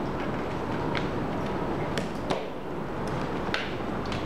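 A few light clicks and knocks of handling as a smartphone is unplugged from its charging cable, lifted out of a zippered charger case and set down on a wooden desk, over a steady background hiss.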